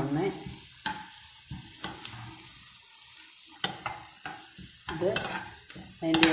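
Sliced onions frying in oil in a non-stick pan, with a spatula stirring them and knocking and scraping against the pan every second or so over a steady sizzle.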